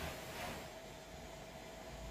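A hand-held block wiping oil onto a wooden tabletop: faint rubbing, with two short strokes in the first half second, then only a low hiss and a faint steady hum.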